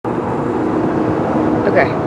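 Steady road and engine noise heard inside the cab of a Ford F-150 pickup cruising at highway speed, with a faint steady hum running under it.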